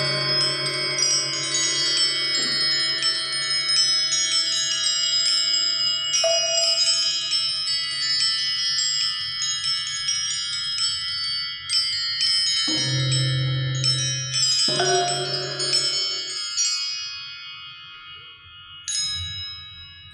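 Suspended tuned metal discs struck in frequent, irregular strokes, many high bell-like tones ringing and overlapping. A low sustained tone runs underneath for most of the passage. Near the end the ringing thins out and dies away before a single fresh strike.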